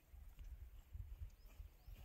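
Near silence: a faint, uneven low rumble on the microphone, with a few faint bird chirps.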